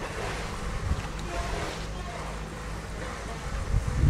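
Wind blowing across the microphone: a steady low rumble, gusting louder near the end.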